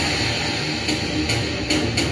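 Movie trailer music under the title card: a sustained drone with four sharp hits in the last second.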